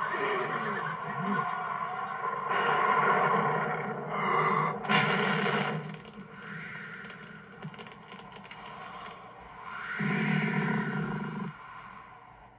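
Cartoon dragon's vocal sound effects and a short whoosh of flame as a paper bursts alight in a woman's hand, over orchestral film music.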